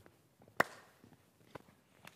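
Footsteps on a stage floor, with one loud sharp hand slap about half a second in: a high five between two men.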